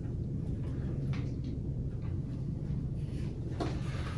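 A few faint light knocks and rustles from handling the cardboard filler board and the hardener tube, one about a second in and one near the end. Under them runs a steady low background hum.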